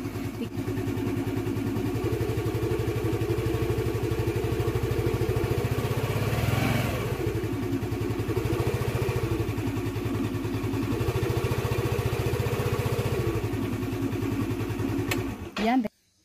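Small petrol scooter engine running, its throttle twisted open about six seconds in so the pitch rises and falls back to a steady run. The engine sound cuts off abruptly just before the end.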